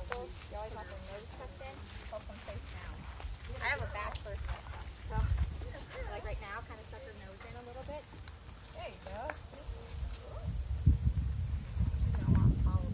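Quiet, indistinct talking in short phrases, with a steady high hiss throughout and brief low rumbles on the microphone.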